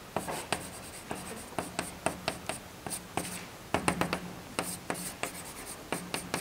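Chalk on a blackboard: an irregular run of quick taps and short scratching strokes as lines and curves are drawn.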